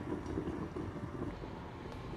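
Steady hiss of a lidded stainless pot of chicken and beef simmering on the stove.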